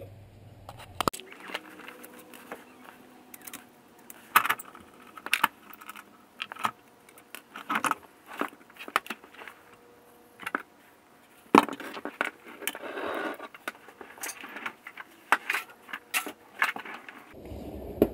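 Irregular metallic clinks, knocks and scrapes as a G35's driveshaft is worked loose and handled under the car, with one louder knock about eleven seconds in.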